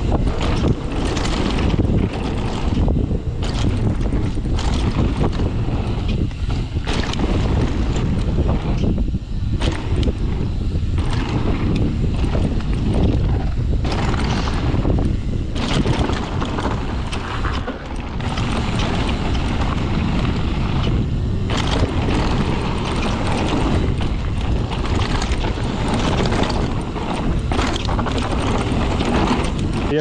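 Mountain bike descending a rough dirt trail, heard from an action camera worn by the rider: constant wind rushing over the microphone mixed with the rattle and clatter of the bike over rocks and ruts, rising and falling with the terrain.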